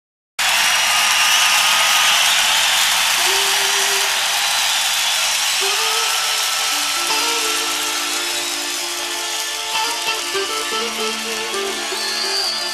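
Live rock concert audience cheering and applauding as the recording begins, the crowd noise slowly fading. From about three seconds in, the band's instruments come in underneath with long held notes that build into sustained chords.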